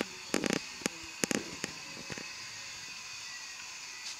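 A quick irregular run of sharp clicks and crackles during the first half, over a steady background hiss.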